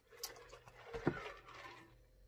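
Faint, wet mouth sounds of eating close to the microphone: lip smacking and sucking sauce off the fingers, in a few soft clicks with a slightly louder one about a second in.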